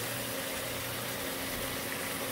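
Redfish fillets frying in butter in a cast iron skillet: a steady sizzling hiss, with a low steady hum underneath.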